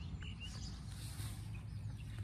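A few short, faint bird chirps near the start, over a steady low outdoor background rumble.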